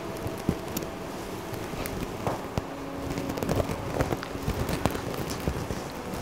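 Rustling and crackling of a tussar georgette Banarasi silk sari being handled, with scattered small clicks.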